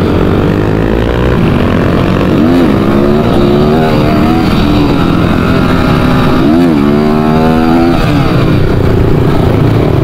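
Dirt bike engine running under way, its pitch climbing twice as it revs up, once a couple of seconds in and again past the middle.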